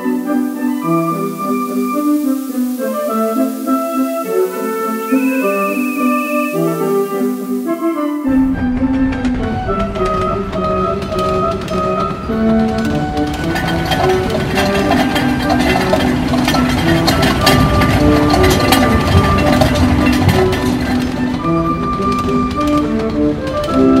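Instrumental background music with a bright melody; about eight seconds in, a fuller, denser layer with percussion joins and carries on.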